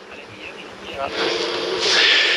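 A man's short, breathy laugh near the end, starting with a low hum, after a second of quiet room tone.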